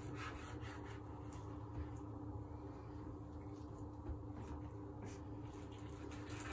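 Kitchen knife cutting raw chicken breast on a wooden chopping board: faint, irregular taps and scrapes of the blade through the meat against the board, over a steady low hum.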